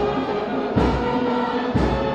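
Ceremonial music with sustained chords, singing and a deep drum beat about once a second: the national anthem played at the opening of a swearing-in ceremony.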